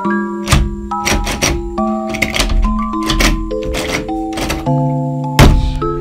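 A locker door being pushed and rattled from inside without opening: a run of irregular knocks and thunks, the loudest near the end, over soft melodic background music.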